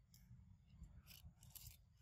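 Near silence: a faint low rumble of outdoor ambience, with a few brief crisp rustling sounds around a second in.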